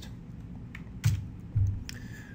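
A few scattered computer keyboard key clicks, two of them with a low thump, as a key is pressed to advance the lecture slide.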